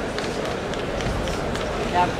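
Hall crowd murmur with a few faint sharp snaps of karate uniforms and bare feet striking the mat during a synchronized team kata, and a brief shout at the very end.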